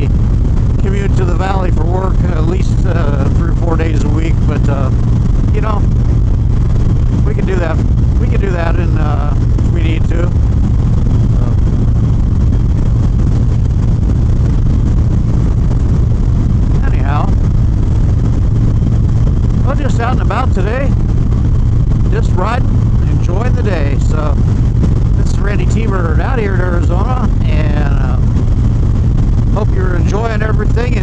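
Harley-Davidson Dyna Street Bob's Twin Cam 103 V-twin running at a steady cruise at highway speed, a constant low drone mixed with wind rush. A man's voice talks over it for much of the time, with a pause in the middle.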